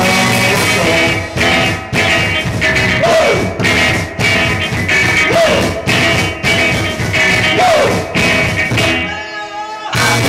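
Live rock band playing loud: electric guitar over drums struck in a steady beat, with a rising-and-falling pitched sweep three times. Near the end the band drops out for about a second, leaving a single ringing note, then comes back in.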